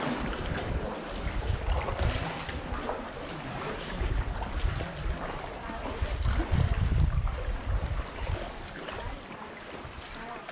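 Wind buffeting the microphone in gusts, over the splash and wash of a canoe paddle working the water beside an inflatable canoe.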